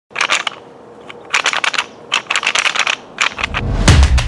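Crisp crunching crackles in four short bursts, then music with a bass-drum beat starts near the end.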